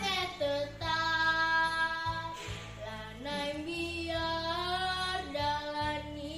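A young girl singing long, held notes with a wavering vibrato over a low accompaniment track, with a short break in her voice about two and a half seconds in.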